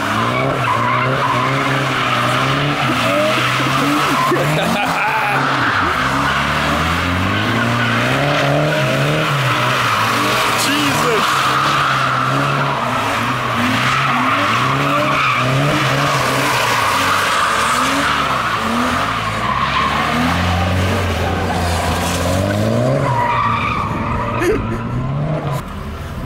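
BMW E36 coupe's straight-six engine revving up and down over and over as the car drifts in circles, with the rear tyres squealing and scrubbing throughout.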